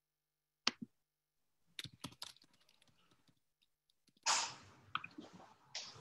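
Scattered clicks of computer keyboard keys, a few taps at a time, with a short soft burst of noise a little after four seconds.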